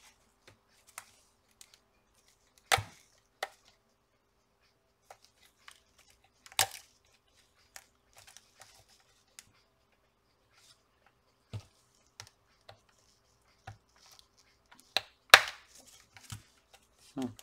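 Plastic snap-fit clips of a power bank's case clicking and cracking as the housing is twisted and pried apart by hand. A few sharp snaps come several seconds apart, the loudest near the end.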